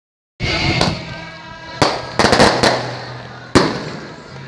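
Firecrackers going off in irregular sharp bangs: one just under a second in, another near two seconds, a quick run of several just after, and a last loud one near the end.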